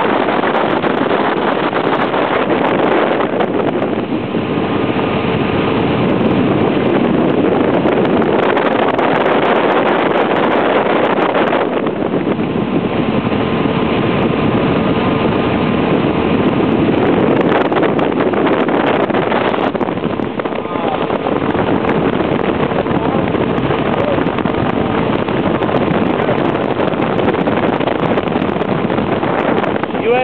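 Motorboat under way, its engine running steadily beneath a loud, continuous rush of wind buffeting the microphone.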